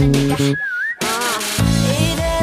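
The song's whistled hook: a single whistled phrase dipping and rising, heard almost alone in a short break where the bass and beat drop out, followed by more whistled notes. Held electric bass notes from a Sterling SUB Ray4 stop just before the break and come back in with the beat about three-quarters of the way through.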